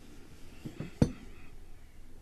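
A beer glass knocks once, sharply, about a second in, a glass-on-hard-surface clink among faint handling sounds.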